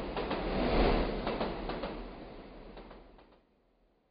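Outro logo sound effect: a rushing noise with a low rumble that swells over the first second, then fades out by about three and a half seconds in.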